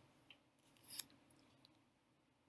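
Near silence: faint room tone with a few small clicks, the clearest about a second in.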